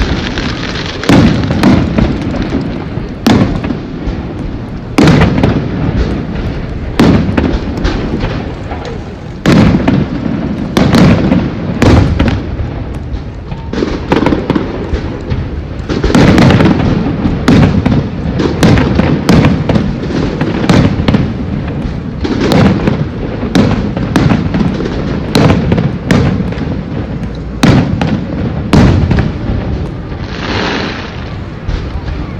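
Aerial firework shells bursting overhead in quick succession, about one loud bang a second, each followed by a rolling low rumble, with busier clusters of bursts in the middle of the show.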